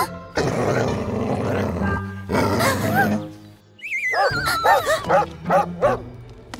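A cartoon dog barking in a quick run of short barks over background music. A wobbling whistle falls in pitch alongside the barks in the second half.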